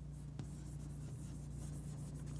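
Chalk scratching in short strokes on a chalkboard as words are written, with a sharp tap of the chalk about half a second in. A steady low hum runs underneath.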